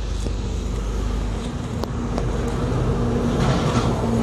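Kubota E7 single-cylinder horizontal diesel engine on a walking tractor running steadily, with a few sharp clicks; a steady hum gets a little louder from about halfway.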